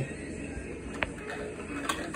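Plastic toy car set down on its wheels on a concrete floor: one sharp click about halfway through, and a couple of faint taps near the end.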